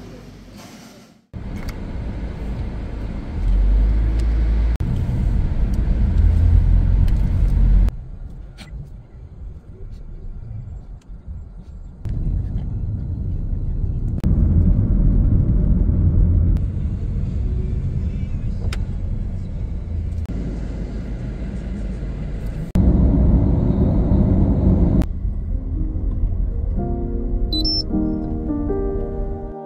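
A string of short clips cut one after another, mostly low rumbling road-vehicle noise that changes abruptly at each cut, with music coming in near the end.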